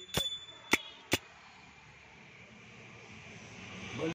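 Three sharp metallic strikes in the first second or so, the first with a high ringing tone that dies away about a second in, typical of small hand-held percussion accompanying a bhajan. After that only a faint steady hiss.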